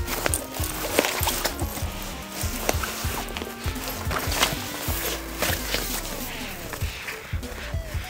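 Background music with held notes, over the rustle and soft knocks of a laptop being slid into a nylon backpack's padded laptop compartment.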